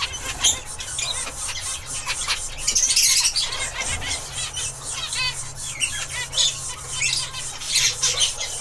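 Zebra finches calling: a steady run of short, high calls with a brighter burst about three seconds in.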